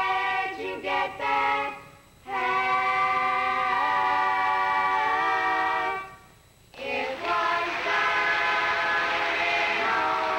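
A family group of six young voices singing barbershop harmony a cappella. They hold long sustained chords that shift in pitch, with short breaks for breath about two and six seconds in.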